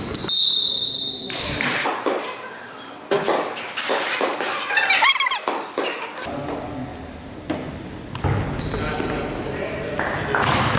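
Basketball game sounds in a large gym: the ball bouncing on the hardwood court, scattered knocks and indistinct voices of players, all echoing in the hall.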